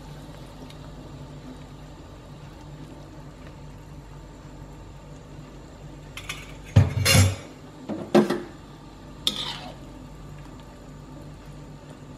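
Broth boiling in a wok on a gas stove, a steady low background, then four metal clanks of kitchen utensils between about six and nine seconds in, the second the loudest.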